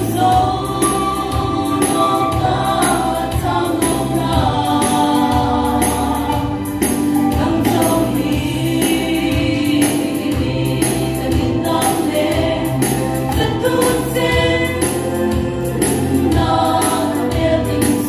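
A six-woman vocal group singing a gospel song in close harmony, live through microphones. Under the voices runs an instrumental backing with a bass line and a steady percussion beat.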